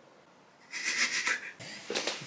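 A person whispering one drawn-out word ("coloriage") close to the microphone. The breathy whisper starts under a second in and lasts under a second, with a small click near the end.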